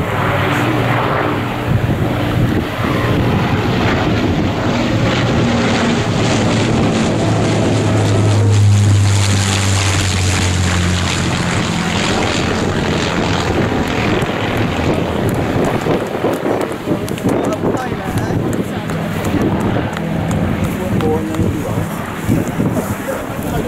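The four Rolls-Royce Merlin V12 engines of an Avro Lancaster bomber running steadily as it flies low past, growing louder to a peak about nine seconds in and then easing off as it moves away.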